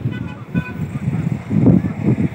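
A vehicle horn giving a few short toots in the first second, over a low rumbling noise.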